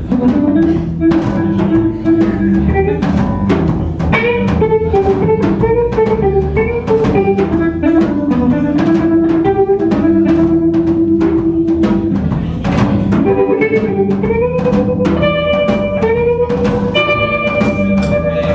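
Live blues band playing an instrumental passage: a red semi-hollow electric guitar plays lead lines with bent, gliding notes over steady drum-kit hits and electric bass. Near the end the guitar holds long sustained notes.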